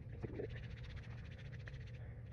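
Hands rubbing liquid chalk together palm against palm, a rapid run of small wet clicks.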